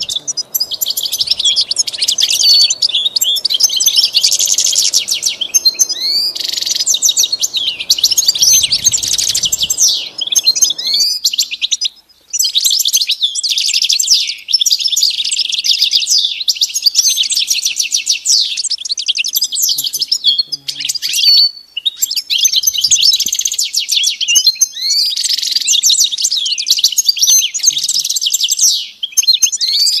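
European goldfinch singing: long runs of rapid twittering, trills and quick up-and-down whistled notes, broken by short pauses a little before halfway, about three quarters through and near the end.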